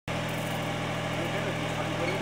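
Engine of an agricultural blower sprayer rig running steadily, a low even hum with faint voices over it.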